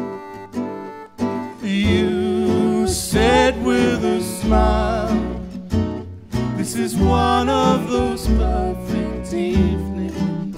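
Gypsy jazz (swing manouche) band playing an instrumental passage: acoustic guitars, double bass and accordion. A wavering melody line comes in and the music gets louder about two seconds in.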